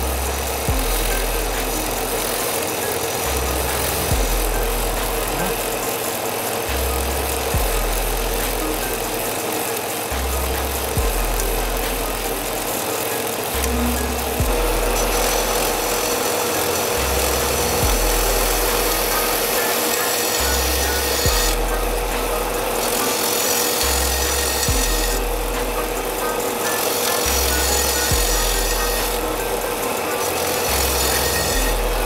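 Bader B3 belt grinder running a narrow contact wheel, grinding the steel spine of a sword blade with a steady rasping hiss and a constant tone. Background music plays under it, with a low bass note that repeats about every three and a half seconds.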